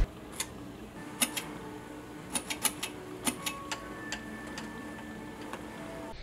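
Quiet room tone with a faint steady hum and about a dozen light, irregular clicks and taps, most of them bunched between one and four seconds in.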